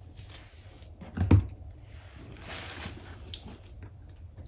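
Handling noise from a leather shoulder bag being moved: a soft knock a little over a second in, then a brief rustle.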